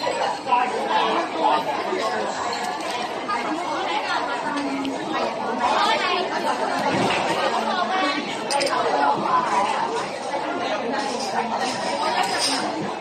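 Busy restaurant dining hall full of diners talking at once: a steady babble of overlapping voices with no single speaker standing out.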